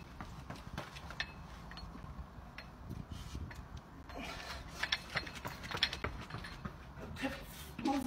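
Light footsteps and taps on a paved pavement, coming as a string of faint, irregular clicks over a low outdoor background hum.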